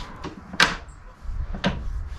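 Two sharp clicks about a second apart from a Bosch GKT 18V-52 GC cordless plunge saw as its adjustment levers are worked by hand, over a low rumble.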